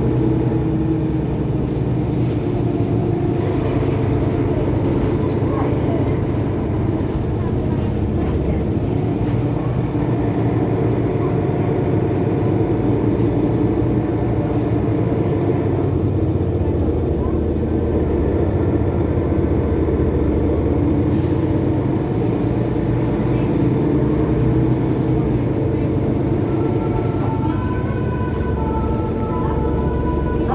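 Mercedes-Benz Citaro Facelift city bus's diesel engine running, a steady low drone that stays even throughout.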